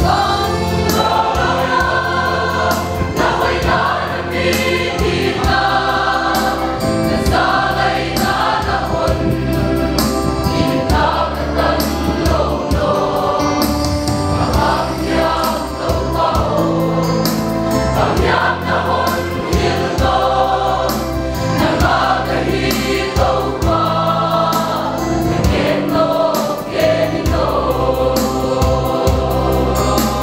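A mixed choir of men and women singing a hymn together, sustained and steady throughout.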